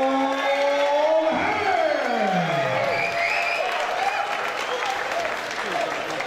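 Audience applauding in a hall, with a man's drawn-out announcing call over the first couple of seconds that holds one note and then slides down in pitch.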